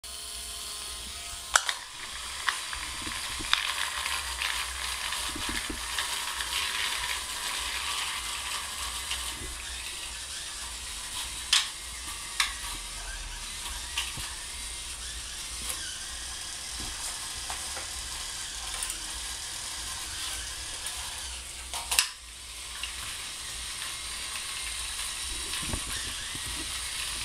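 Small plastic DC gearmotors of a Raspberry Pi differential-drive robot running with a steady gritty whirr. A few sharp clicks or knocks stand out, the loudest about a second and a half in and again about four seconds before the end.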